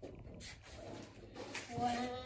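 A high-pitched voice making a short vocal sound that glides up and down in the last half second, after soft rustling and a faint click.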